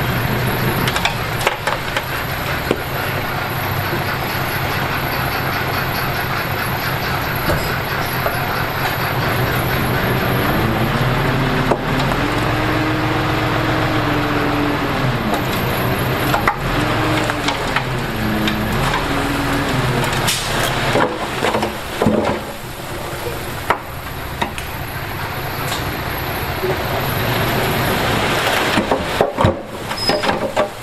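5-ton dump truck tipping its load: the diesel engine runs under load, its speed rising and falling in the middle, as the raised bed lifts further and soil and stones slide out with a steady crackling clatter and a few sharper knocks later on.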